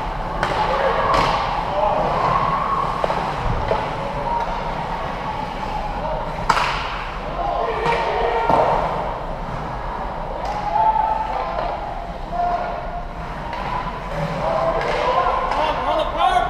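Sounds of an ice hockey game: voices calling out across the rink, with sharp knocks of sticks and puck on the ice and boards, the loudest a single crack about six and a half seconds in.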